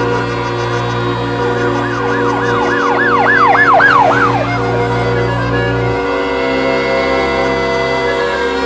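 Emergency-vehicle siren in fast yelp mode, wailing up and down about four times a second. It grows louder for a couple of seconds, then fades away, over steady sustained music.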